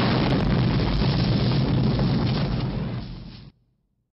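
Logo intro sound effect: a long, explosion-like rumbling rush of noise, heaviest in the low end, that fades slightly and then cuts off suddenly about three and a half seconds in.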